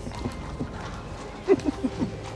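Horse hooves clip-clopping on a town street, a scatter of light knocks, with a short voiced sound about one and a half seconds in.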